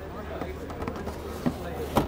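Two short knocks about half a second apart near the end, as a lithium-ion battery module is slotted back into the electric motorcycle's battery bay, over a steady low hum and faint background voices.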